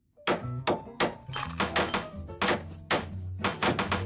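Rapid hammering, about five blows a second, of a hammer driving nails into wooden floorboards, over background music.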